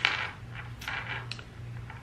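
A few light clicks and clinks of small hard items being handled on a desk, the sharpest right at the start, over a steady low hum.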